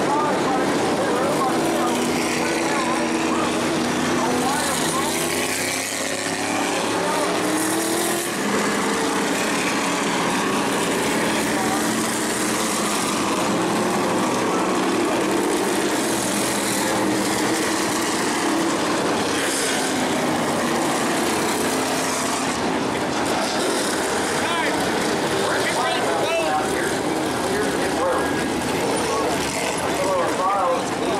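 Tour-Type modified race car engines running at low speed, their pitch rising and falling slowly, with indistinct voices in the background.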